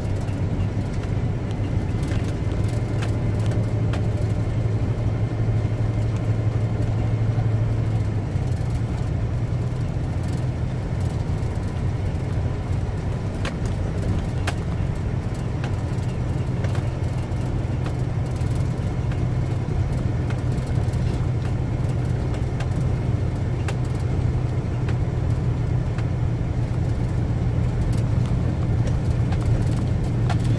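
Tractor-trailer's diesel engine running steadily, heard from inside the cab while driving on a gravel road, with scattered clicks and rattles. The engine note shifts slightly about eight seconds in.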